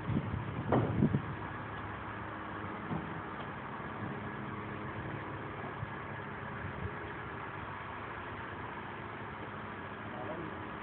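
Steady, even hum of a running engine or motor, with a few short louder sounds in the first second.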